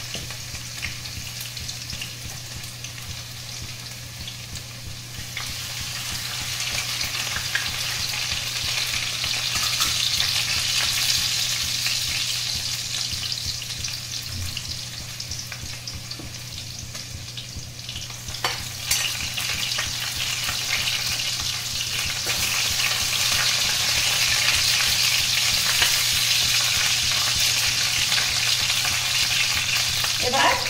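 Hot oil sizzling as pieces of food fry in a kadai, a steady hiss that swells around ten seconds in and grows louder again over the last third.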